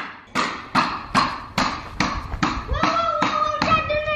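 A child hammering on a block of wood: sharp, even knocks about two and a half a second. A held, voice-like tone joins in near the end.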